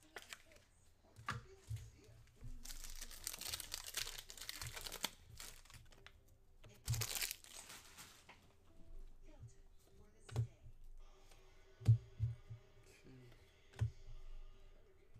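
The wrapper of a pack of trading cards being torn open and crinkled, in two stretches of crackling noise, the first about three seconds in and a shorter one about seven seconds in. A few sharp clicks and taps follow as the cards are handled.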